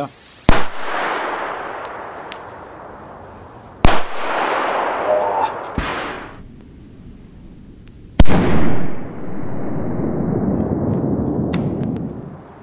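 Zena Match Cracker friction-head firecrackers (1.2 g, F2 class) going off: very loud sharp bangs about half a second in, about four seconds in and again about eight seconds in, each followed by a long rolling echo. There is a smaller crack near six seconds.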